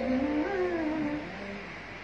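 A man singing a held, wavering vocal phrase over sustained electronic keyboard chords. The phrase fades out toward the end.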